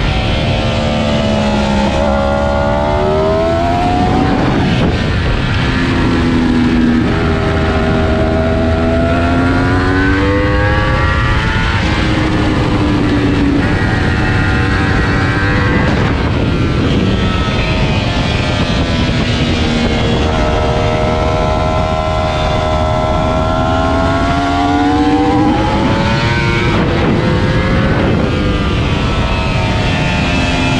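Yamaha R1 inline-four sportbike engine at racing speed, its pitch climbing over two to eight seconds as it accelerates hard, then falling back, again and again through the lap, over a steady low rush.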